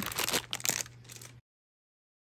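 Plastic packaging of a pack of wooden clothespins crinkling and crackling as it is handled, cutting off to dead silence about one and a half seconds in.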